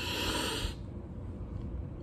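A man sniffing deeply through his nose at the mouth of an opened soda bottle: one long sniff that ends under a second in.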